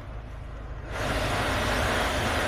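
2016 Hyundai Sonata's climate-control blower fan: a rush of air from the vents comes up sharply about a second in as the fan-speed knob is turned up, over a low steady hum from the car.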